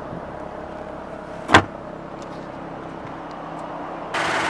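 A single sharp knock about one and a half seconds in, over a steady low background noise.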